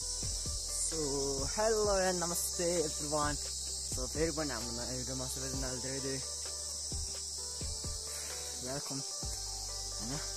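A steady, high-pitched chorus of insects chirring, with a voice heard over it in the first few seconds.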